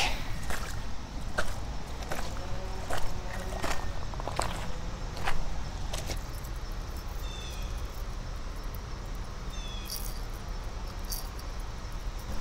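Footsteps on creek-bank gravel: irregular crunching steps on loose stones for the first half or so, then fainter with only a few scattered clicks.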